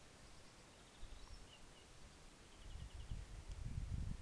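Faint songbirds chirping in short quick trills, several times over, above a quiet outdoor hush. A low rumble builds up in the last second or so.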